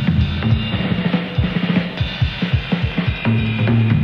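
Live jazz band playing, with the drum kit to the fore: quick, busy snare and bass-drum strokes over low bass notes.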